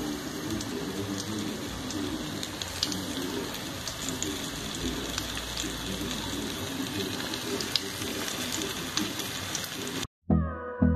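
Flour-dredged fish pieces frying in hot oil in a pan: a steady sizzle with scattered small crackles.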